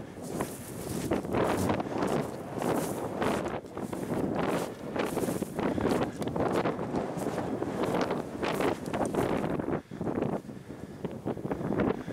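Wind buffeting the microphone, mixed with the irregular crunch of footsteps through thin snow and dry grass.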